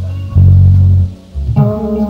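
Live band playing an instrumental intro: a bass guitar holds a loud low note, drops out briefly, then slides back in as sustained chords from the rest of the band come in near the end.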